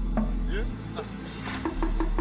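Amapiano instrumental: short pitched percussive hits over a deep bass. The bass and beat drop out for about a second in the middle, a hissing swell rises, and the beat comes back near the end with rapid, evenly repeated notes.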